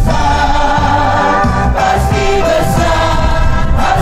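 A congregation singing a hymn together, in slow, long-held notes.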